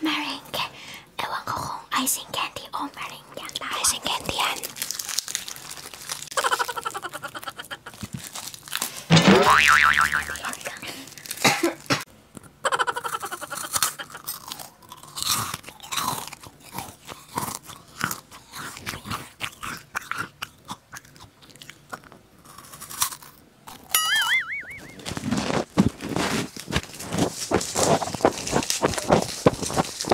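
Crunchy puffed snack chips bitten and chewed close to a small handheld microphone, a rapid run of crisp crunches. A loud sliding tone breaks in about a third of the way through, and a shorter wavering one near the end.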